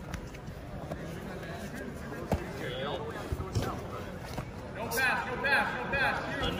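Indistinct voices in a large, echoing arena, with a few sharp thumps, the loudest about two seconds in; near the end the voices grow louder.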